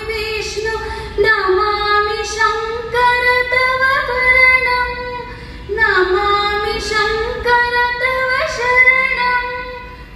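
A woman singing a devotional prayer song solo, holding long notes with gliding ornaments, in two long phrases with a short breath a little past the middle.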